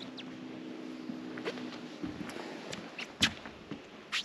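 Scattered light clicks and knocks of someone moving about on a fibreglass deck boat, the loudest about three seconds in, over a faint steady hum during the first two seconds.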